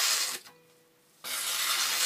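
Knife blade of a CRKT Liong Mah Design #5 slipjoint slicing through magazine paper with a hissing rasp, twice. The first cut ends about half a second in and the second starts just over a second in. The blade cuts cleanly: it is sharp.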